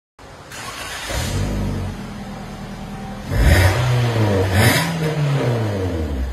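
Toyota Vios NCP150's four-cylinder engine revved through an A Performance stainless 4-1 extractor and rear catback exhaust with its exhaust valve closed. The pitch rises about a second in and falls back, then two sharper revs come past the middle before it settles back toward idle.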